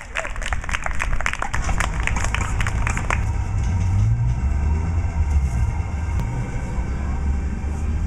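Audience clapping by hand for about three seconds, then dying away into a steady low rumble of outdoor noise.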